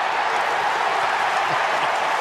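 Large stadium crowd cheering and applauding steadily after a goal.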